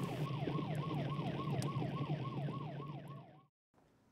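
Emergency-vehicle siren in a fast yelp, its pitch sweeping up and down about three times a second, fading out and going silent shortly before the end.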